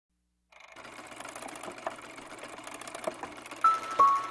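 A fast, dense clattering rattle fades in after a brief silence over a faint low hum, with a few louder clicks, and near the end a bright bell-like note starts the opening music of an animated film.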